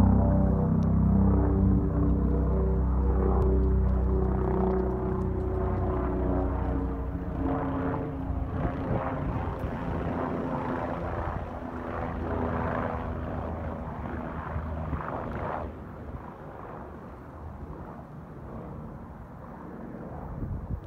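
A helicopter flying overhead. Its rotor chop is clearest in the middle and drops away sharply about three-quarters of the way through. Sustained ambient music chords play over the first third and fade out.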